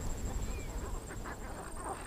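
Faint open-air natural ambience: a steady, high-pitched pulsing trill with a few soft, scattered animal calls.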